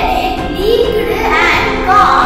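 A boy's voice performing over background music.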